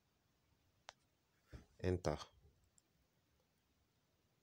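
A single sharp click a little under a second in, a finger tapping the phone's touchscreen as an address is entered; a fainter tick follows later.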